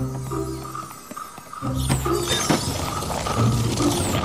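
Cartoon background music that fades away about a second in, then starts again with a falling swish and a couple of sharp strikes about halfway through.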